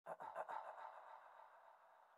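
Quiet electronic sound effect opening a music track: a quick run of about five falling blips in the first half second, ringing on into an echo that fades away.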